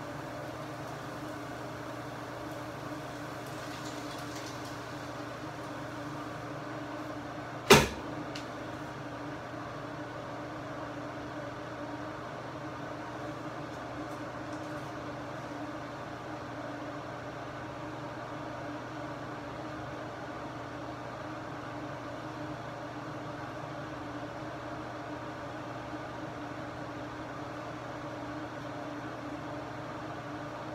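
Steady mechanical hum of a kitchen range hood exhaust fan, with a single sharp knock about eight seconds in.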